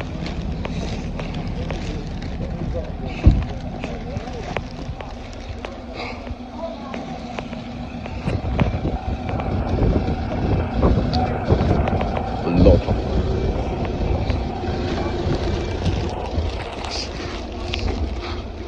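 Outdoor street noise picked up by a handheld phone: wind rumbling on the microphone over a steady vehicle engine hum, with voices in the background and a sharp knock about three seconds in.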